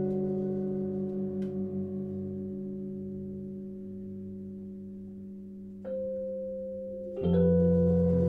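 Fender Rhodes electric piano chords ringing and slowly fading, wavering briefly about a second in. A new note enters about six seconds in, then a louder fresh chord with a low bass note about seven seconds in.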